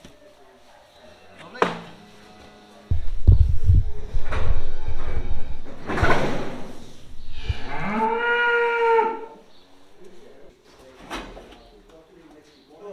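A cow moos once, a long call that rises in pitch and then holds, from about three-quarters of the way in. Before it come loud low rumbling and knocks, the sound of the camera being handled.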